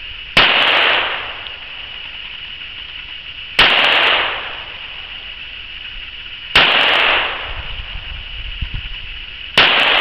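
Colt Mark IV Series 70 1911 pistol in .45 ACP fired four times, slow single shots about three seconds apart, each loud crack followed by a short echo.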